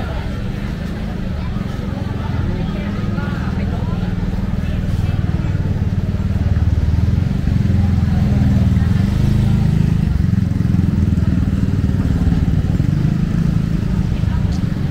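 Motorcycle engines running at low speed close by, growing louder over the first half and then holding steady, with people chatting around.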